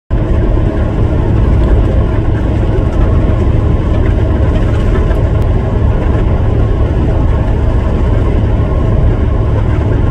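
A passing double-stack intermodal freight train makes a steady, loud low rumble.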